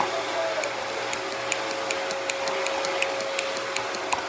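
Small irregular clicks and ticks from a plastic lotion bottle being squeezed and handled over a bowl, about two or three a second, over a steady faint hum.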